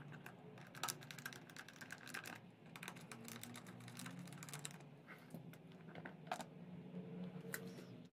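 Scattered faint clicks and ticks of a small JIS screwdriver turning out the screws of a Suzuki DR650's plastic airbox side cover, with the cover being handled, over a faint steady low hum.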